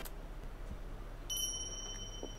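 A single bright ding, a bell-like chime sound effect, strikes about one and a half seconds in and keeps ringing, over a low steady hum.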